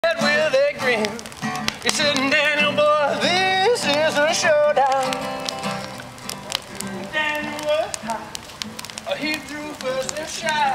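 Acoustic guitar playing with a wordless, wavering melody line over it. The crackle of a large bonfire runs through, with many small pops.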